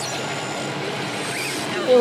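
Blast sound effect from an animated show's soundtrack: a steady rushing rumble as a smoke cloud billows out, with faint voices under it. A man says "ooh" near the end.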